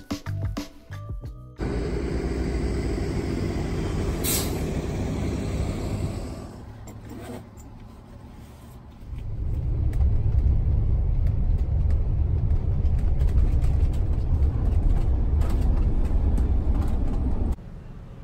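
A moment of music, then the road noise of a camper van driving: a steady rush of tyre and engine noise, easing off for a couple of seconds, then a heavier low rumble from about nine seconds in that cuts off suddenly near the end.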